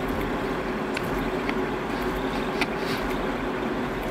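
Delta 3D printer running mid-print: a steady whirring hum with one faint steady tone and a few light ticks.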